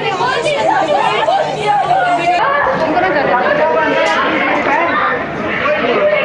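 Several people talking loudly at once, their voices overlapping so that no single speaker stands out.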